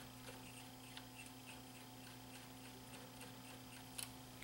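Near silence: faint scattered small clicks and ticks of fingers handling a cassette deck's transport mechanism, over a steady low hum.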